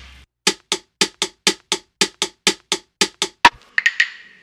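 Stripped-down percussion from a played-back hip-hop beat: a short, dry drum hit repeating steadily about four times a second with no bass under it. It forms the bridge between one beat and the next.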